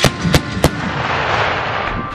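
Three shots from the Pandur 8x8 armoured vehicle's turret weapon, about a third of a second apart, each a sharp crack, followed by a rolling blast that fades over about a second.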